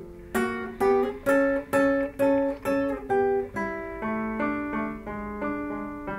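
Nylon-string classical guitar picking a slow single-note melody, about two notes a second, turning softer about three and a half seconds in.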